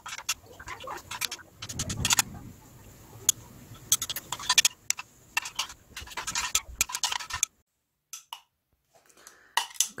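Metal spoon stirring thick sunscreen emulsion in a glass beaker, clinking and scraping against the glass in irregular clicks; the cream is thickening as it cools. The stirring stops for about two seconds near the end.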